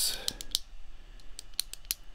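About five sharp, scattered clicks from a computer's pointing device, over a faint steady low hum.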